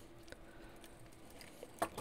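Faint small clicks and handling sounds of a screwdriver driving a small screw into a plastic robot motor bracket, with a sharper click near the end.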